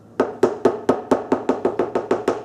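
A rapid run of about a dozen hollow, ringing taps, about five a second, each at the same pitch.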